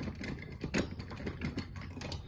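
Four or five light clicks and knocks of things being handled close to the microphone, over a steady low hum.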